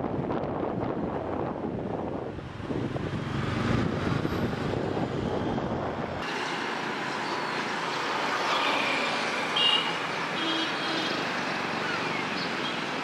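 Road and wind noise from riding in a car through light traffic. About six seconds in it cuts abruptly to a thinner street-traffic sound without the low rumble, with a few brief high tones.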